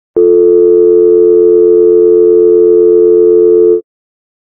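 Telephone dial tone: a loud, unbroken two-note hum that holds steady for about three and a half seconds and then cuts off abruptly.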